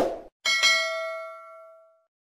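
A short click, then a bell-like ding about half a second in that rings with several clear tones and fades out over about a second and a half: the notification-bell sound effect of a subscribe-button animation.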